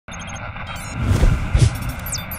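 Sound effects of a TV channel's animated logo intro: a few quick high beeps, then two deep booms with whooshes, the first about a second in and the second near the end.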